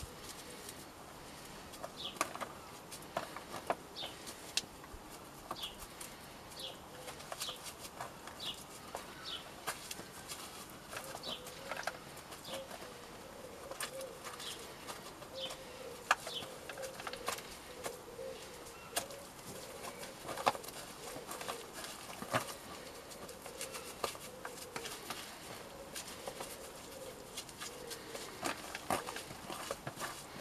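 Fingers crumbling and breaking up wet, hydrated coco coir in a thin plastic tray: soft rustling with scattered crackles and clicks from the tray. Birds call in the background, with short chirps in the first half.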